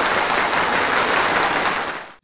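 Applause sound effect, a dense burst of clapping that starts and stops abruptly, played as the correct answer is revealed.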